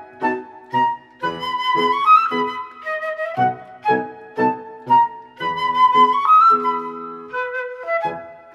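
Concert flute playing a lyrical melody of long held notes that step upward twice, over piano accompaniment striking repeated chords about twice a second.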